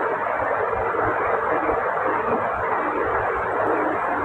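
Steady background hiss with no speech, even and unchanging throughout.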